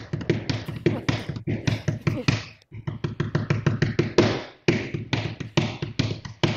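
Hands tapping out a quick drum-like rhythm on a hard surface, several taps a second, pausing briefly about two and a half seconds in and again near the end. Heard through a video-call microphone.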